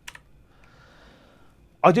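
A single short key click, the slide being advanced, followed by a faint hiss in the pause before speech resumes near the end.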